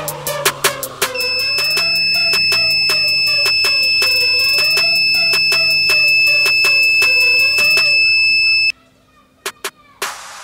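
Piezo buzzer on a homemade transistor rain-sensor circuit sounding one steady high beep, set off as the sensor detects water. It starts about a second in and cuts off suddenly about nine seconds in, over background music with a beat.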